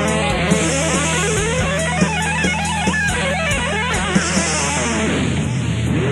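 Punk-metal band recording: electric guitars, bass and drums, with a lead melody wavering in pitch over sustained low notes and regular drum hits.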